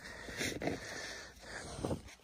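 A bare hand scraping and brushing packed snow away from a buried gas pipe, soft crunching rustles, with a man breathing hard from digging.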